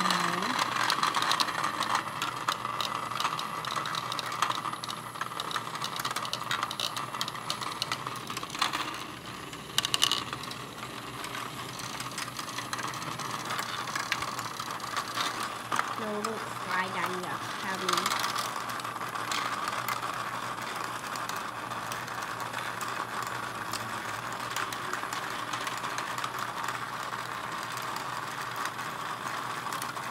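Several HEXBUG Nano Nitro micro-robots buzzing and rattling as their vibration motors shake them along plastic habitat tracks, a steady, dense clatter of tiny ticks.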